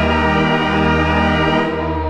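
FRMS granular synthesizer patch made from a kitten's meow sample, playing a held, steady chord with a deep bass note underneath.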